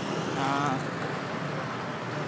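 Steady street traffic noise from motorbikes riding past.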